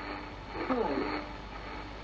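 A voice slowly reading out a single digit, "two", in the manner of a shortwave numbers station, with the pitch falling through the word. Under it run a steady hiss and a constant low hum.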